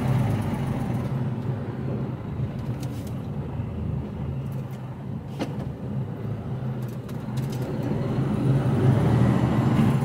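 Diesel engine of an HGV lorry heard from inside the cab, running low as the lorry slows for the roundabout, then pulling louder near the end as it accelerates onto it. A single sharp click about halfway through.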